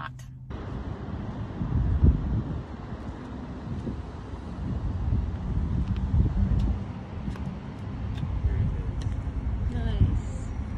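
Wind buffeting the phone's microphone outdoors: a low, gusty rumble that swells and fades, with a few faint ticks.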